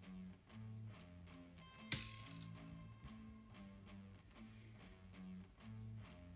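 Quiet background guitar music with a slow bass line, and one sharp small click about two seconds in.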